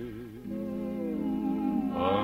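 1940s orchestral ballad accompaniment between vocal phrases: a held note with wide vibrato fades out, then soft sustained chords carry a slowly falling melody line.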